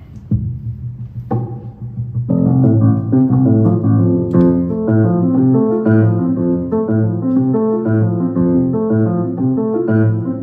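Solo jazz etude played on a stage keyboard with a piano sound, the left hand in open triads. After a quiet start with two soft notes, steady chords and a melody come in about two seconds in and carry on.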